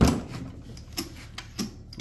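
Half-inch keyed chuck of a DeWalt joist driller being turned by hand: a sharp knock right at the start, then light, irregular metal clicks about every half second.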